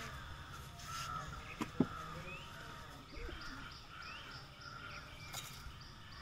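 Faint outdoor background of birds calling, with repeated short rising chirps. Two sharp taps come just before two seconds in.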